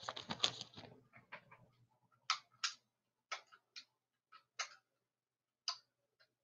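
Light clicking and tapping from something being handled at close range: a quick flurry of clicks in the first second or two, then single sharp clicks every half second to a second.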